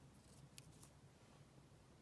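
Near silence: room tone, with two faint soft ticks about half a second apart as a small ribbon bow is handled.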